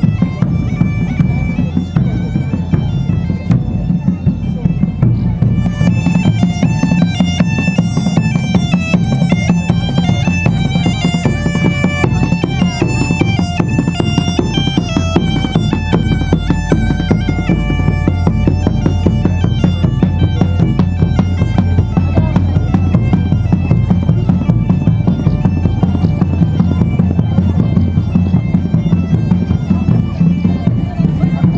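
Bagpipe playing a melody over a steady drone, with a rope-tensioned drum beating along: live medieval-style folk music for dancing.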